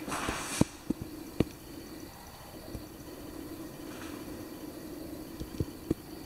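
Footsteps on the floor of an empty room: a few sharp, irregular taps in the first second and a half and again near the end, over a low steady background sound.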